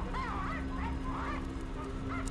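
Horror film soundtrack: a steady low drone under a run of short squeaky chirps, several a second, each rising and falling in pitch.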